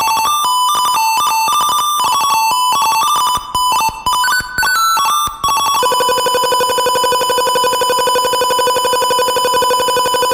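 1-bit PC speaker chiptune, slowed down and drenched in reverb: a quick run of square-wave beeps jumping between pitches several times a second, then from about six seconds in a single long held beep.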